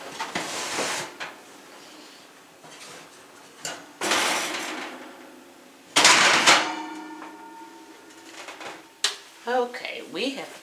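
Kitchen handling noises: rustling bursts, then about six seconds in a sharp clatter followed by a ringing tone that fades over about three seconds.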